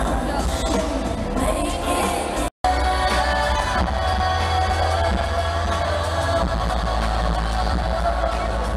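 Live pop music with a woman singing over a band with a heavy bass, recorded from the audience. Its steady sound breaks for a split second about two and a half seconds in, where the footage is cut.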